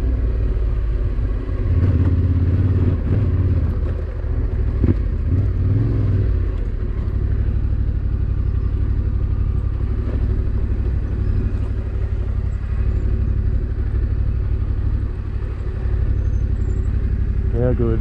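Adventure motorcycle's engine running at low revs, with short rises in throttle about two and five seconds in, then running steadily at low speed for the rest.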